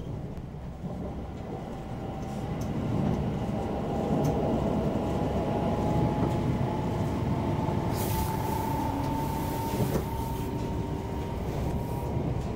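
Inside a Class 720 Aventra electric multiple unit on the move: a steady rumble of wheels on track, with a whine that slowly rises in pitch. A short hiss about eight seconds in, lasting about two seconds.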